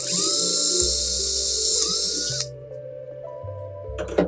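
A small high-speed electric rotary tool whirring with a hissy whine. Its pitch sags briefly under load about two seconds in, and it cuts off suddenly after about two and a half seconds, over background music.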